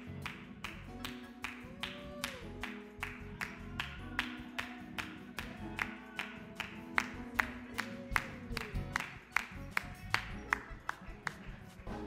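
Church keyboard playing sustained chords over a steady beat of sharp percussive hits, about three a second, which grow stronger in the second half.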